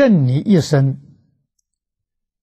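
A man speaking Mandarin; the sentence ends about a second in, followed by silence.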